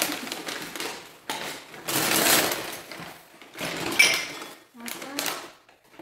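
Paper and plastic rubbish bags rustling in irregular spells as hands rummage through them for drinking glasses, with a sharp glass clink about four seconds in.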